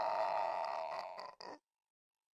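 Horror-film sound design: a steady, rasping sound effect that cuts off abruptly about one and a half seconds in, followed by dead silence.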